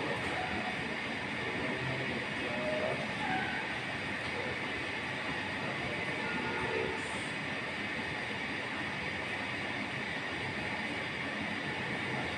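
Steady background noise, an even hiss with no rhythm or change, with a few faint distant voices now and then.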